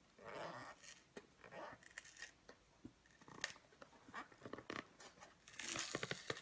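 Cardboard cereal box being opened by hand at the top: the glued flaps tearing and scraping in short rasps with scattered clicks, and a louder tearing rasp near the end.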